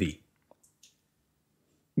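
A man's voice finishes a word, then two faint short clicks and a soft hiss follow, then near silence.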